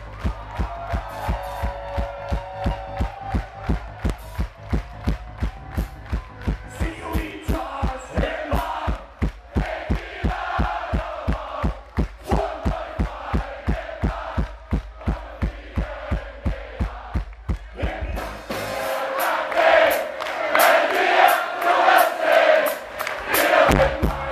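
Live rock band playing through a club PA: a steady kick-drum beat of about three hits a second under a singer's vocals. About three-quarters of the way through the drums drop out and loud crowd chanting and singing takes over.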